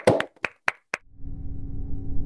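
A few separate hand claps picked up by a video-call microphone, about six in the first second. About a second in, a low, steady droning music sting starts.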